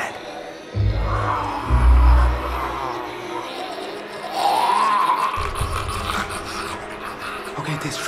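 Horror film score with two deep bass swells, under drawn-out wavering moans from men imitating zombies.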